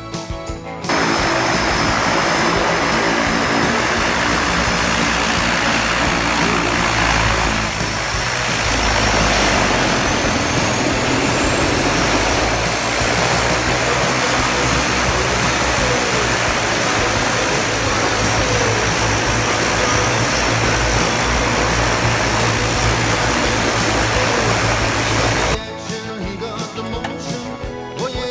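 A floatplane's engine and propeller running, a loud steady roar mixed with wind noise on the microphone, shifting slightly about eight seconds in.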